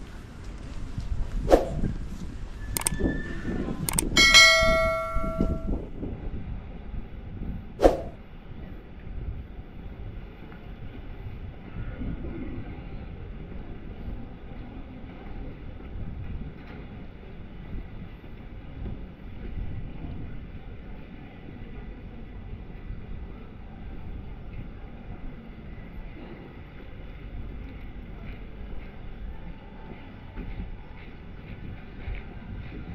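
Pedestrian-street ambience with a few sharp knocks in the first seconds and a single bright metallic bell-like ding about four seconds in that rings out for about a second and a half. After that, a steady low background of the street with a faint hum.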